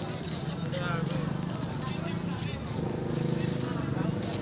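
People talking nearby in a busy outdoor crowd. About three quarters of the way in, a steady engine hum comes in under the voices.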